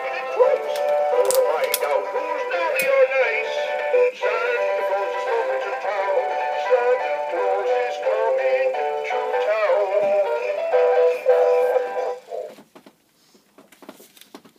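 Animated flying Santa Claus toy airplane playing a Christmas song with singing through its small speaker, thin with no bass. The song ends about twelve seconds in.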